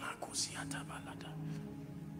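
Whispered speech: a few breathy syllables with a sharp hiss in the first second and a half, over soft sustained background music.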